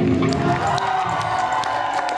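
A heavy metal band's final chord ringing out as the drums drop away, with a live audience cheering and applauding over it.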